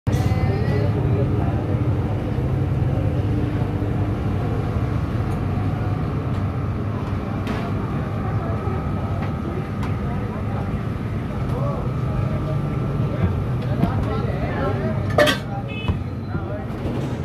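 Busy roadside stall ambience: a steady low rumble of traffic with background voices, and one sharp clack near the end.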